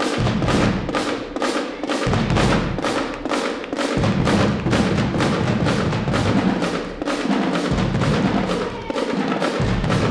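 High school marching band playing a percussion-driven number with an even beat of about three hits a second. Deep low notes drop in and out every second or two.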